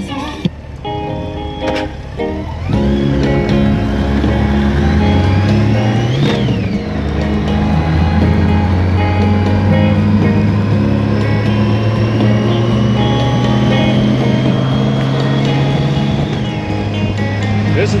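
Music playing through a touring motorcycle's stereo from an iPod on the AUX input, over engine and wind noise while riding. The music gets louder about three seconds in.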